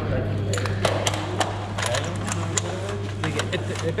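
Rigid plastic cervical collar being handled and fitted, giving a run of irregular sharp plastic clicks and knocks over a steady low hum, with faint voices.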